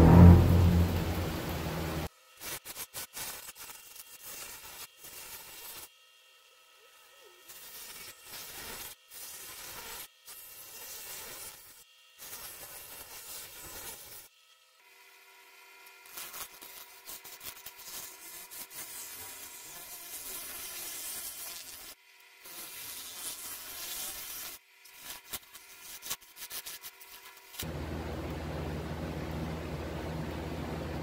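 Wood lathe spinning a dried oak bowl while a one-way coring tool with a carbide cutter head cuts into it. It is slow going in the hard dry wood: a noisy cutting sound in stretches, broken by short sudden gaps. A loud low sound fills the first two seconds, and steady music comes in near the end.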